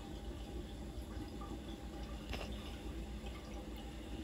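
Steady trickling of water circulating in a running saltwater reef aquarium, with a low hum underneath.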